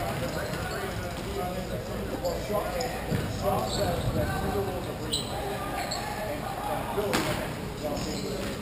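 Rink ambience of a hockey game in a large echoing hall: distant players' voices and scattered clacks of sticks and puck, with a sharper knock about seven seconds in.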